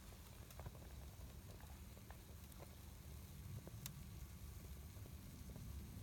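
Near silence: a faint low background rumble with a few soft ticks.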